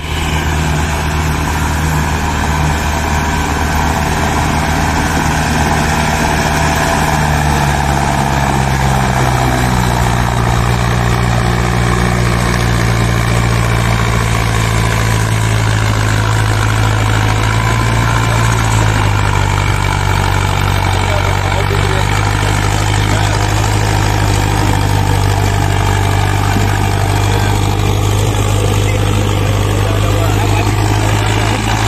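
Farm tractor's diesel engine running under heavy load, hauling two trailers stacked with sugarcane. The steady engine note drops lower about a third of the way in and again past the middle.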